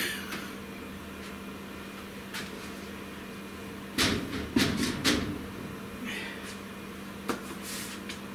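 A carved wooden panel set down on the laser cutter's metal honeycomb bed: a few sharp knocks and clatters about four to five seconds in, with another knock near the end, over a steady low hum.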